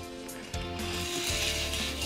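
A die-cast Hot Wheels car rolling down an orange plastic track, a steady rushing rattle that starts about half a second in, over background music.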